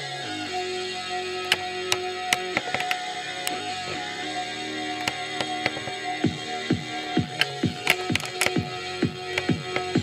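A song with a steady beat, played from cassette through a Quasar GX3632 boombox's replacement 4-ohm speakers.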